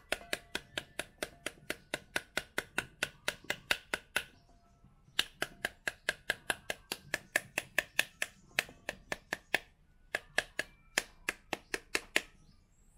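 A knife's plastic handle rapping the back of a scored pomegranate held over a steel bowl, knocking the arils loose, about four sharp knocks a second. The rapping stops briefly about four seconds in and again around ten seconds in, then goes on.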